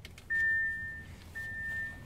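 Audi Q7's dashboard warning chime sounding two long, steady beeps at the same pitch, just after the ignition is switched on.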